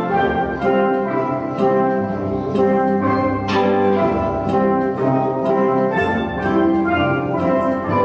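Steel pan ensemble playing a tune: tenor and bass steel drums struck with mallets, their pitched metallic notes ringing over one another to a steady beat.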